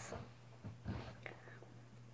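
Soft whispering, a few faint breathy strokes about halfway through, over a steady low hum.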